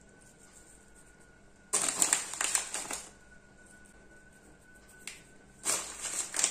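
Nigella seeds sprinkled by hand onto egg-washed bread dough and parchment paper: two short bursts of dry, crackly pattering, the first about two seconds in and the second near the end.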